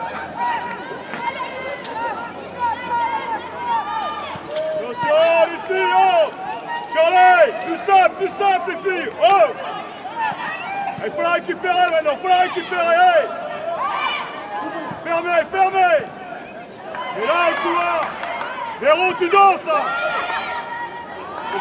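Several high voices shouting and calling out over one another at a women's football match, loudest about seven to nine seconds in and again near the end.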